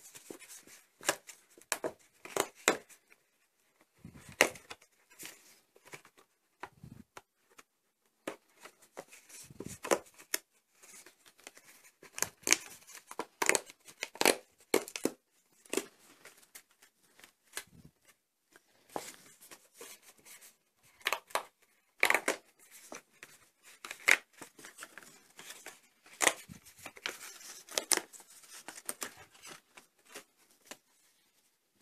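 Die-cut cardboard pieces being pressed out of a printed card sheet by hand: irregular short snaps and tearing sounds as the card tabs break, in clusters with brief pauses between.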